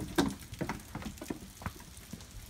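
Footsteps on concrete: about five steps at a walking pace, the first the loudest.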